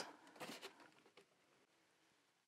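Near silence: room tone, with one faint, brief hiss about half a second in.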